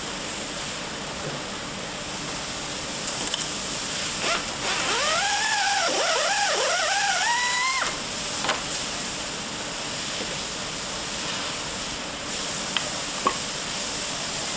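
Steady factory hiss and machinery noise, with a handheld power tool's motor whining for about three seconds near the middle, its pitch rising and dipping repeatedly as it is worked. A few short knocks follow later.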